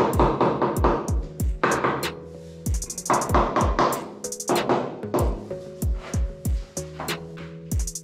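Background music with a steady electronic drum beat: kick drums, sharp hi-hat hits and held tones.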